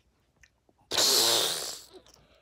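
A harsh, hissing sound effect made with the mouth, lasting about a second and starting about a second in.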